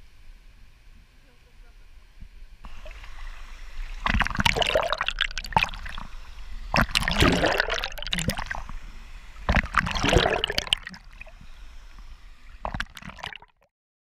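Water sloshing and gurgling around a GoPro camera as it is dipped under the surface, in three loud surges between about four and eleven seconds in, with a few short splashes after them.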